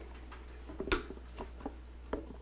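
A few light clicks and taps from hands handling a tamp label applicator's head and the box beneath it, the sharpest about a second in, over a steady low hum.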